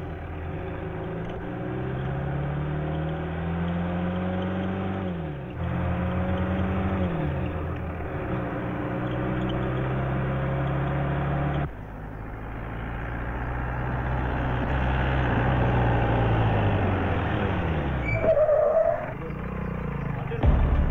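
A vehicle engine pulling along the road, its pitch climbing and then dropping at each gear change, several times over. There is a short higher-pitched sound near the end.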